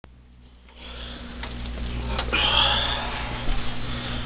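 Rustling and handling noise close to the microphone as a person moves right by it, with a few sharp knocks and a loud rustle about two and a half seconds in.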